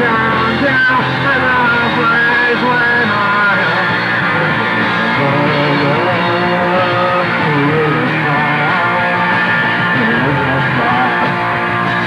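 Punk rock band playing live: electric guitars and drums, with a lead vocal sung into the mic.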